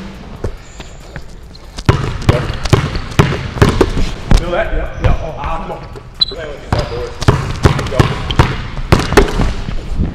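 Basketballs bouncing on a hardwood gym floor during a dribble-and-layup drill: quieter for about the first two seconds, then many sharp bounces, several a second, with voices in between.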